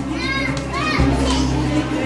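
Children's excited voices, high calls and squeals, over loud party music with a heavy steady bass that breaks off briefly about a second in.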